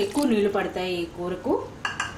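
A woman speaking, over a spatula stirring a watery potato curry in a pan.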